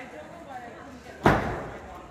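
A single loud slam or thud about a second and a quarter in, echoing in a large hall, over faint voices.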